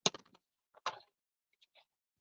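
Cardstock and scissors being handled on a cutting mat while a flap is readied for trimming: two sharp clicks about a second apart, the first the loudest, then a couple of faint ticks near the end.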